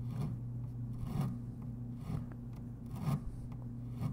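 Sandpaper wrapped around a popsicle stick rubbed over the end of a guitar fret, a soft scratchy stroke about once a second as the fret end is rounded and dressed. A steady low hum runs underneath.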